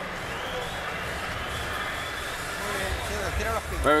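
Steady arena crowd noise, a hum of many voices, between rounds of a boxing match, with a cornerman's voice saying "very good" near the end.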